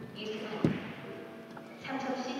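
Carom billiard balls colliding during a three-cushion shot: one sharp click about two-thirds of a second in. A voice starts near the end.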